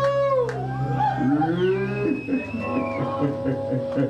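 Live rock band playing: electric guitars with bending, wavering notes over a held bass note, which gives way to a pulsing, rhythmic bass line about halfway through.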